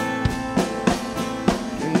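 Live band playing a short instrumental bar of a country-folk song: guitars ringing out sustained chords over drums keeping a steady beat, with the singer coming back in on one word at the very end.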